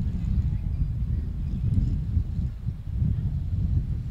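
Low, uneven rumble of a pack of Pure Stock race cars circling the dirt oval at pace speed before the green flag.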